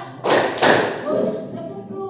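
A classroom of students clapping twice in unison, then voices calling out: the "prok prok" response of a call-and-response clapping chant.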